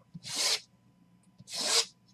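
Two short rasping rubs, about a second apart.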